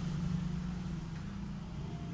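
A steady low background hum or rumble.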